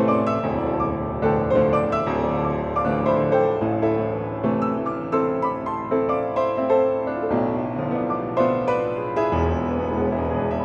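Yamaha G3E grand piano played in a flowing passage of many notes, a melody ringing over sustained chords, with a deep bass note struck near the end.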